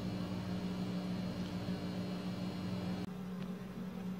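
Steady low electrical hum with a layer of hiss, part of the hum dropping away about three seconds in.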